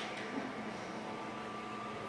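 Quiet indoor room tone: a faint steady hiss with a low, even hum and no distinct events.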